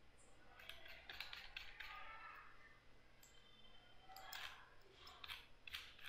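Near silence: room tone with a few faint, scattered clicks from a computer mouse working in the code editor.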